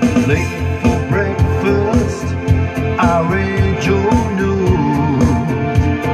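A man singing into a handheld microphone over recorded backing music with a steady beat.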